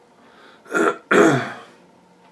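A man clearing his throat: two short bursts a little under a second in, the second louder and longer.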